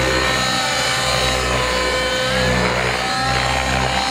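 Radio-controlled helicopter in aerobatic flight: a steady whine of motor and rotor blades made of several tones, shifting in pitch around the middle as the pilot works the rotors.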